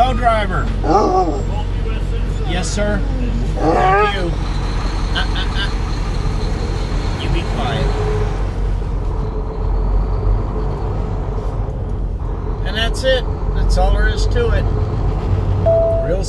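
Volvo semi truck's diesel engine heard from inside the cab as a loud, steady low drone while the truck pulls away from a stop, with brief voices over it several times.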